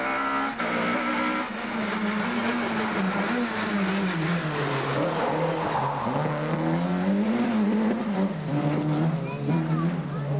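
Two-litre rally kit car's engine revving hard at full stage pace, its pitch climbing and dropping again and again through gear changes and lifts. There is a break about half a second in, where one car's sound gives way to the next.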